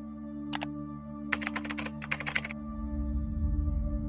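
A single click, then a quick burst of computer keyboard typing lasting about a second, as a search query is typed. Under it runs soft ambient music of steady, sustained tones, with a deeper low swell coming in near the end.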